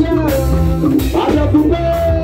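Live Ghanaian highlife band playing: electric guitar, bass guitar and drum kit under a man singing into a microphone, the sung line wavering and sliding in pitch.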